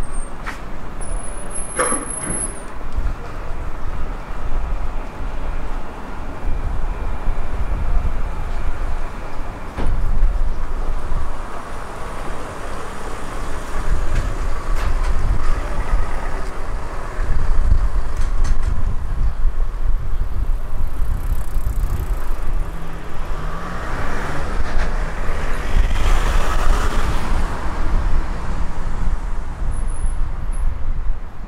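Road traffic on a town street: motor vehicles running under a steady low rumble, with a brief high squeal about two seconds in. One vehicle passes louder between about 23 and 28 seconds.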